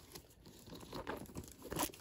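Crinkling and rustling as hands work the leather strap and plastic-sleeved tag of a new canvas-and-leather Dooney & Bourke tote, with a louder rustle near the end.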